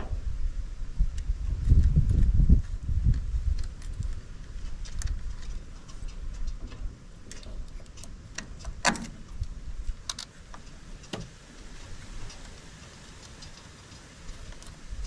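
Scattered light clicks and taps of electrical wires and terminal fittings being handled while leads are refitted to a tractor's starter solenoid, with a low rumble in the first few seconds.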